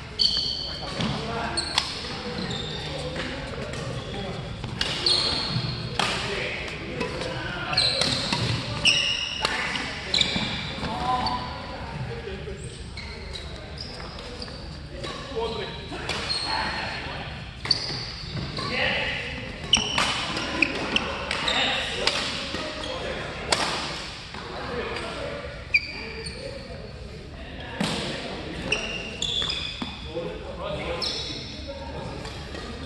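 Doubles badminton play: sharp racket strikes on the shuttlecock and short high squeaks of court shoes on the floor, echoing in a large hall, with voices in the background.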